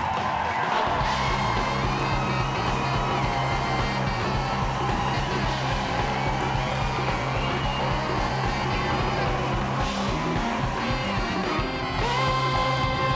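Live Latin dance band playing an instrumental passage: trumpet and saxophone lines over congas, drum kit and a steady, repeating bass line.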